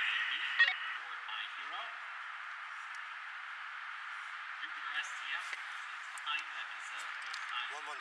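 Steady hiss of an open two-way radio, with a sharp click about half a second in and faint voices now and then.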